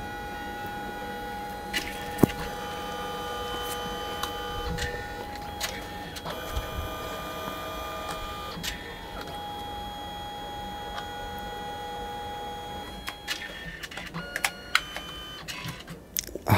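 Canon SELPHY CP1000 dye-sublimation photo printer printing: its paper-feed mechanism whirs steadily in stages, the motor pitch shifting every few seconds as the paper passes back and forth for each colour layer. A run of clicks comes near the end as the finished print is fed out.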